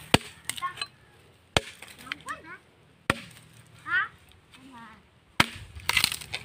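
A blade chopping into a wooden log to split firewood: four sharp strikes, a second or two apart.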